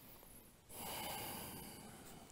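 A person's long, audible breath, a hissing rush of air starting just under a second in and trailing off, taken while holding downward-facing dog.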